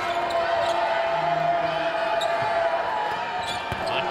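Steady arena crowd noise at a college basketball game, with a basketball being dribbled on the hardwood court.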